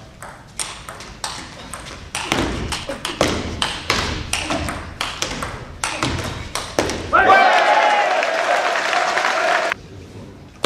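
Table tennis rally: the ball clicks sharply off bats and table, about two hits a second. Near the end the rally stops and a long, loud held shout rings out over clapping, then cuts off suddenly.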